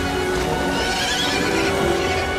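A horse whinnying about a second in, over orchestral film score music with sustained held notes.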